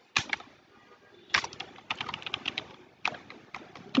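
Computer keyboard keys clicking as text is typed, in short irregular runs of keystrokes: one near the start, a quick cluster in the middle, and a few more near the end.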